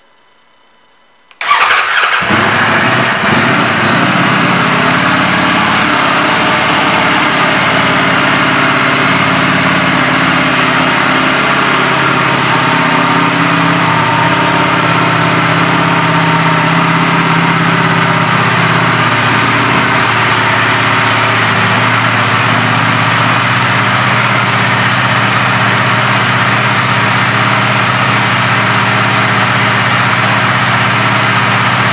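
Ducati Streetfighter V4 S's 1103 cc V4 engine starting about a second and a half in, after near silence, then idling steadily.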